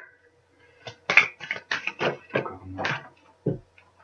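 A deck of oracle cards shuffled and handled by hand: a quick run of papery flicks and slaps lasting about two seconds, starting about a second in.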